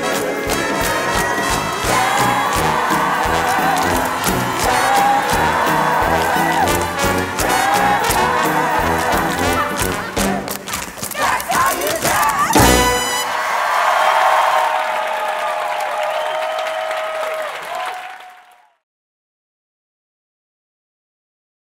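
Theatre orchestra with brass playing an up-tempo jazz show number with sharp, quick percussive hits, building to a loud final hit about two-thirds of the way in. A held final note follows under audience cheering and applause, fading out to silence near the end.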